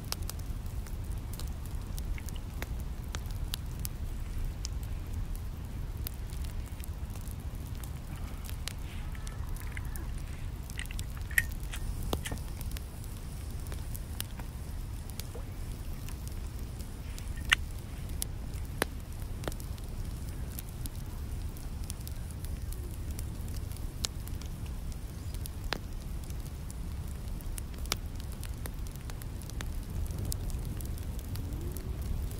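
Twigs burning in a small box-shaped camp wood stove, crackling with scattered sharp pops every few seconds over a steady low rumble.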